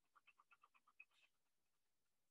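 Near silence, with faint, quick scribbling strokes of a pen shading in a drawing, about eight strokes a second, stopping about a second in.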